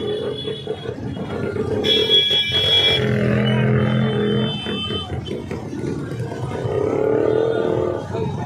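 Slow-moving procession of motorcycles and scooters: engines running, a vehicle horn held for about a second and a half near the middle, with crowd voices mixed in.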